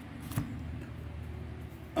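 A folding knife being handled at a foam-lined hard case, giving one light click about a third of a second in, over a low steady hum.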